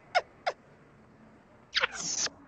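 Two quick whistles, each falling sharply in pitch, then quiet. Near the end come another falling whistle and a short whoosh.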